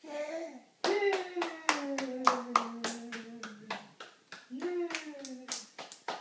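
Hands clapping in a steady rhythm, about three claps a second, starting about a second in. A voice sings long, slowly falling notes over the claps.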